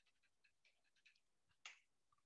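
Near silence with a few faint computer keyboard clicks, one slightly louder click near the end.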